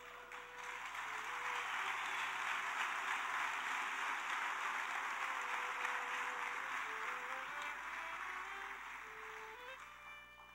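A congregation applauding. The applause builds over the first second or two and dies away near the end, over soft background music of slow held notes.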